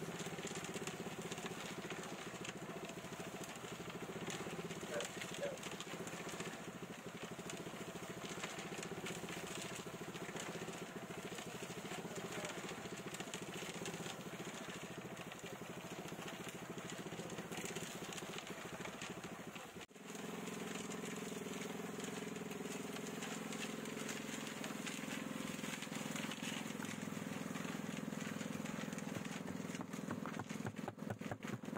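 Small drum concrete mixer running steadily with a concrete mix tumbling in the turning drum. The sound cuts out briefly about twenty seconds in, then comes back with a stronger low hum.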